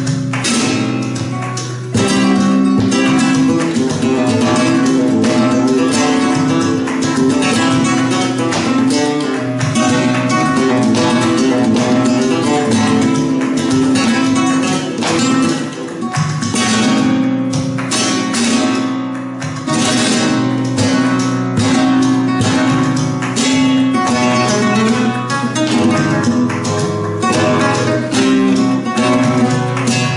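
Andalusian Guitars Simplicio 1932 double-back flamenco guitar played solo with a capo: a continuous flamenco passage of fast picked notes over ringing bass notes, with a short break about two seconds in.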